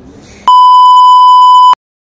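A loud, steady electronic bleep tone, the kind dubbed in during editing. It lasts just over a second and cuts off abruptly into dead silence.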